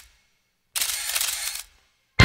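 Camera shutter and motor-drive film-advance sound effect: the last moment of one burst at the very start, then, after a short gap, a second burst of rapid clicking whirr lasting about a second.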